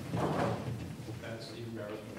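A man says a hesitant "uh", with light scraping and rustling as a large map board in a plastic sleeve is picked up and handled.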